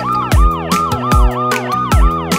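Police siren sound effect, a fast yelp rising and falling about four times a second, over a children's song backing track with a steady kick drum.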